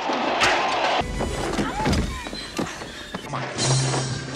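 Film fight-scene soundtrack edited together: a scuffle with thuds and grunts, with music coming in near the end after a hard cut.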